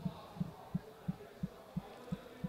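Soft low thumps repeating evenly, about three a second, with no speech over them.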